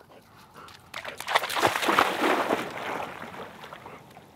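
A dog splashing into shallow lake water: a burst of splashing starts about a second in, is loudest for a second or so, and then dies down as the dog swims off.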